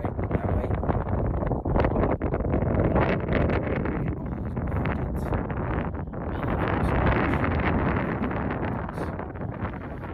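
Wind buffeting a phone's microphone: a steady rushing noise in gusts that swells twice, about three seconds in and again about seven seconds in.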